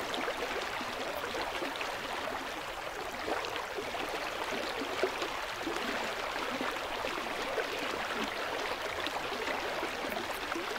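Steady rush of a flowing stream, running water with small flickers of splashing through it.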